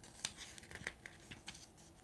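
Faint desk handling sounds: about six short, light clicks and rustles spread over two seconds.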